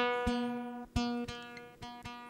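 Guitar chords strummed a few times as a song opens, each chord ringing out and fading before the next.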